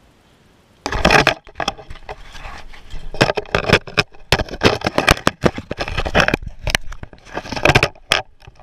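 Water sloshing with sharp knocks and scrapes in an ice-fishing hole as a large brown trout is lowered back into the water and the camera dips in beside it. The sounds start suddenly about a second in and go on irregularly, loud and full of clicks.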